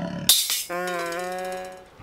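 A short comic music sting: a brief crash about a third of a second in, then one held, steady note lasting about a second before it fades out.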